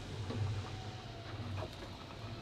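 Faint low hum under quiet room noise, dropping away about three-quarters of the way through.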